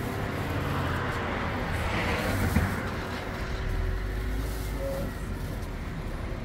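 Outdoor traffic noise: a motor vehicle running close by, its low rumble growing stronger about halfway through, with light crinkling of thin plastic produce bags being handled.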